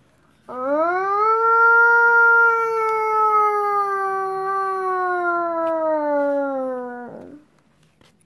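A child imitating a siren with his voice: one long wail that rises quickly, then slowly sinks in pitch for about six seconds and stops abruptly.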